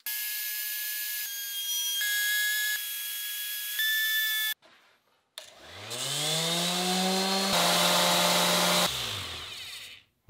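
Bosch trim router running as it cuts the edge of a hardwood end-grain cutting board: a steady high whine that shifts in pitch a few times. After a short gap, a random orbital sander spins up with a rising hum, runs on the board, and winds down near the end.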